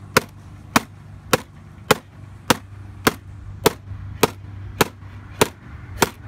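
Hammer striking the closed lid of a white plastic MacBook in about ten sharp blows at a steady pace, a little under two a second.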